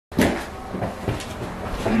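A sharp knock or bang at the very start, followed by a few softer knocks and low rustling.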